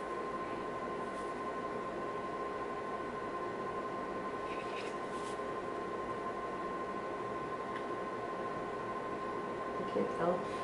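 Steady electrical hum with a thin, unchanging high whine, and a short rustle about five seconds in.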